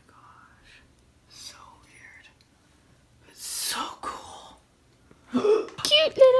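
A woman's breathy whispering in a few short bursts, the loudest about three and a half seconds in, with louder voice sounds starting just before the end.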